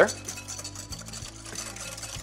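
Wire balloon whisk beating a thin egg-yolk mixture in a glass bowl, the wires swishing through the liquid and clicking against the glass.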